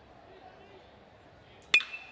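Aluminum college baseball bat striking a pitched ball near the end: one sharp crack with a brief high ring, solid contact that drives a hard-hit line drive.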